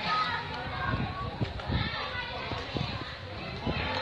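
Children playing and people talking in the background, with a few soft low thumps.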